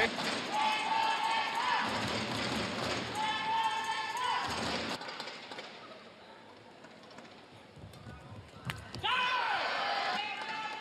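Badminton rally: sharp racket hits on the shuttlecock, with long high-pitched calls from the spectators twice in the first half. After that comes a quieter spell, then a fresh burst of calls and squeaks near the end.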